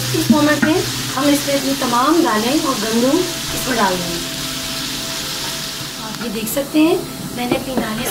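Oil sizzling in a pot of chicken masala as a wooden spatula stirs it. A voice with no words made out is heard over it during the first half.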